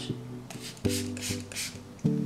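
Several quick hissing sprays from an HSI Professional Argan Oil heat-protectant pump-spray bottle misting onto hair, over soft acoustic guitar background music.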